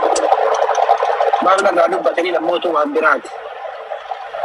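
Speech: a voice talking, thin-sounding with little bass, as over a live-stream call link, pausing briefly near the end.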